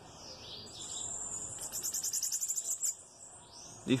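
Bananaquit singing: a high, thin song of short slurred notes and a rapid trill of repeated ticking notes lasting about a second in the middle.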